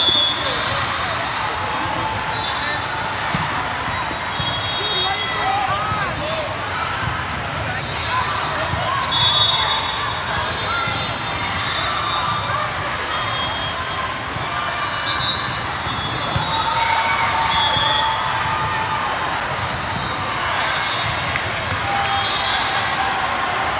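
Din of a large volleyball tournament hall: many overlapping voices, balls being hit and bouncing on the courts, and short high-pitched squeaks now and then, all echoing in the big room.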